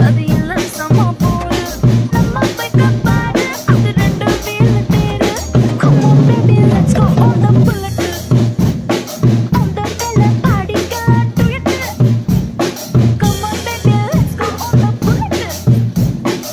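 Acoustic drum kit played along to a recorded Tamil film song: kick drum, snare and cymbal hits keep a steady, busy beat over the song's backing music.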